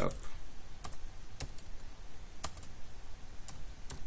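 A handful of separate keystrokes on a computer keyboard as a short word is typed.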